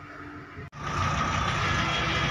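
Engine and road noise heard from inside a moving bus cabin, a steady drone with a high whine. It is quiet at first, then jumps abruptly much louder about two-thirds of a second in.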